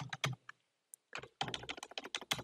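Typing on a computer keyboard: a few quick keystrokes, a pause of about half a second, then a fast run of key taps through the second half.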